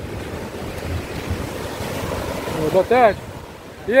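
Small surf waves breaking and washing up the sand in a steady rush, with wind buffeting the microphone. A voice calls out briefly near the end.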